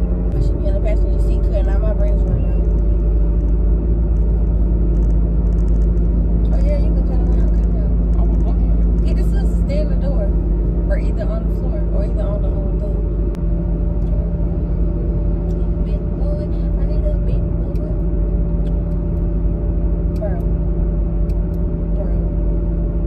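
Steady low road and engine rumble of a car being driven, heard from inside the cabin.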